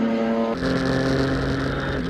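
Sprint Race Brasil cars' V6 engines running at a steady pitch. About half a second in, the sound switches to the car's own engine heard onboard: a lower, steady drone over a hiss of tyres on the wet track.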